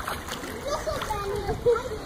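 Water splashing as a small child kicks and paddles in a swimming pool, with faint voices in the background.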